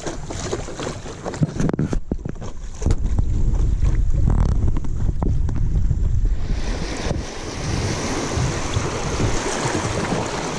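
Wind buffeting the microphone with a low rumble through the middle, giving way past the middle to the steady rushing hiss of river water running fast and choppy around a stand-up paddle board. A few light knocks in the first two seconds.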